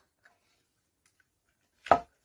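A single short, sharp plastic knock from a parcel tape dispenser gun being handled near the end, after a quiet stretch.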